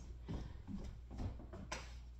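Faint footsteps and handling noises as a person moves about a kitchen, with one brief sharper sound near the end, over a low steady room hum.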